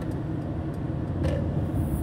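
Steady low drone of engine and tyre noise inside the cab of a Mercedes-Benz Sprinter van cruising at highway speed.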